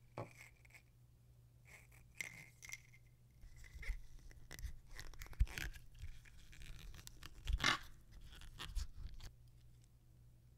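Small plastic blister pack holding a replacement watch crown, handled and slit open with a blade: faint crinkling, scraping and light clicks, with a sharper crackle about seven and a half seconds in.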